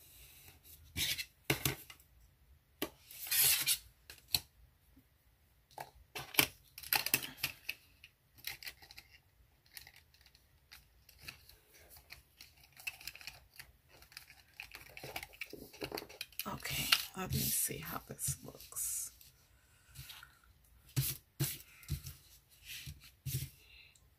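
Washi tape being pulled off its roll and torn, with paper sticker sheets and planner pages being handled: irregular rustles, tears and small taps, some lasting about a second.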